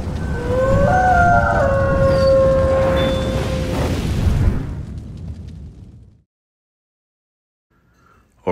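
Cinematic logo-reveal sound effect: a deep rumbling boom with a few held tones rising over it, fading out about six seconds in.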